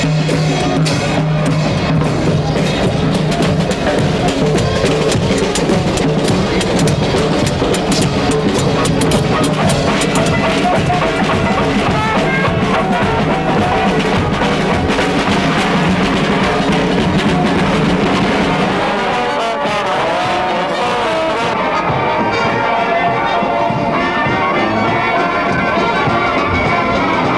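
Traditional jazz band playing, with brass and drums; the drumming thins out about twenty seconds in.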